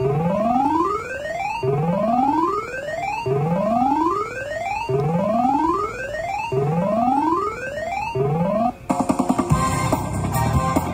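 A Deuces Wild video poker machine tallies a Royal Flush win onto its credit meter with a rising electronic tone that repeats about every 0.8 s. About 9 s in, the tally gives way to a denser jackpot alert as the machine locks up for a hand pay.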